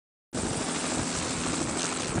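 Helicopter flying, a steady rotor and engine noise that starts suddenly after a brief silence.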